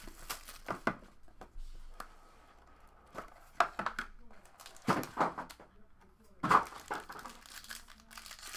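Clear plastic wrapper on a pack of trading cards crinkling and tearing as it is opened by hand, with light knocks and scrapes from handling the card box. The crackles come in several short clusters, the loudest late on.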